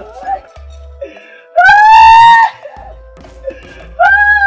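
A man lets out one long, high howling wail about halfway through, over a steady background music drone. He is acting out a fit of madness.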